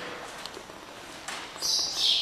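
A bird's high-pitched call about a second and a half in, sliding down in pitch at the end, after a quieter stretch of faint background hiss.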